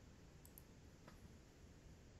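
Near silence with a few faint clicks, about half a second in and again just after one second.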